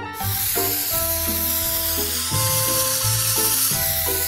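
Aerosol spray-paint can hissing steadily, as in a continuous spray, over background music with a bass line and sustained melody notes.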